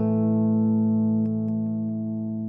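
Electric guitar played through a Brunetti Magnetic Memory tube delay pedal: a chord struck just before holds and rings out over a steady low note, slowly fading.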